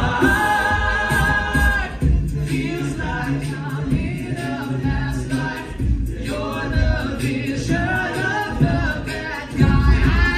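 All-male a cappella group singing through microphones and a PA: a chord held for about the first two seconds, then a rhythmic passage of moving chords over a deep vocal bass line.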